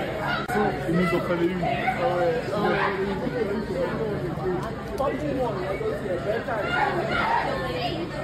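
Overlapping, indistinct voices of several people talking in a large hall, over a steady low hum.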